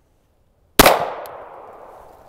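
Silence, then a single 9mm handgun shot just under a second in, its echo dying away over the following second.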